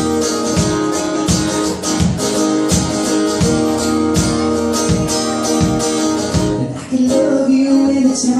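Acoustic guitar strummed in a steady rhythm, about three strong strokes every two seconds, in an instrumental passage of a live song; the strumming pattern changes near the end.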